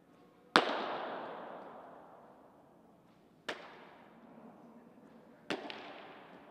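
Three sharp smacks of a softball during catching drills, each with a long echo in an indoor training space. The first is the loudest, about half a second in, and the other two come about three and five seconds in.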